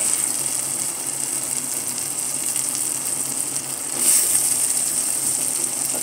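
Onion-tomato masala frying in oil in a pot, sizzling steadily as raw potato sticks are tipped in, with a louder surge of sizzling about four seconds in.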